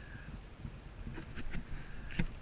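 Low rumble of wind buffeting the microphone, with a few faint knocks a little past the middle.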